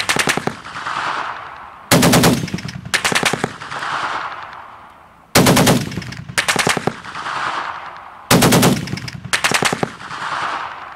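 Belt-fed machine gun firing short bursts of a few rounds each. The bursts come mostly in pairs about a second apart, repeating every three seconds or so, and each pair is followed by a rolling echo lasting about a second.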